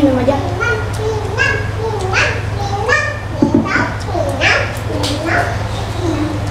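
Children's voices chattering and calling out in the background, some high-pitched, over a steady low hum.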